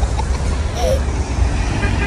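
Steady low rumble of background noise, with a faint brief voice about a second in.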